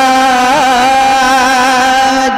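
A male voice singing a naat, holding one long sustained note with small wavering turns of pitch.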